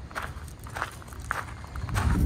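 Footsteps crunching on loose gravel, about two steps a second.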